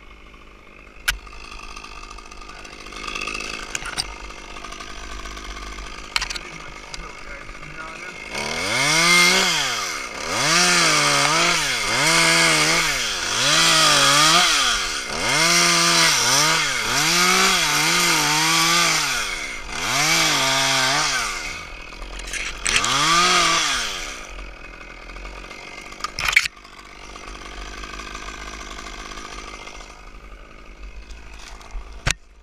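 Top-handle chainsaw revved again and again while limbing a spruce, about ten rises and falls in pitch roughly a second and a half apart over some fifteen seconds, with quieter running before and a sharp click after.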